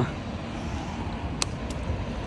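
Steady street background noise with a low rumble, like distant traffic, and a single sharp click about one and a half seconds in.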